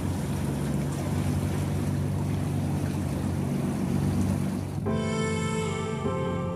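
Tugboat engine running with a steady low drone over the rush of river water. Music comes in with sustained tones about five seconds in.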